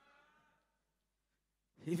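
Faint murmured response of a congregation's voices, fading out within the first half second, then near silence; a man starts speaking into a microphone near the end.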